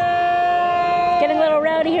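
Horns blown in a crowd, several long held notes at two pitches sounding together, steady at first and then wavering and shifting about a second and a half in, among the crowd's yelling.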